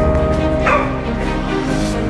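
Background music with steady held tones, and a single short bark from a search-and-rescue dog a little over half a second in. A rising whoosh comes just before the end.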